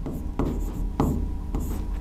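Marker pen writing on a whiteboard: about four short, sharp strokes.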